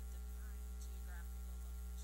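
Loud, steady electrical mains hum in the sound system, with faint speech barely showing through underneath.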